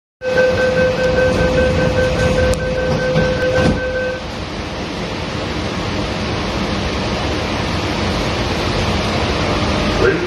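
Running noise inside a Sydney Metro (Alstom Metropolis) train carriage: a steady rushing rumble, with a steady whine over it that stops about four seconds in.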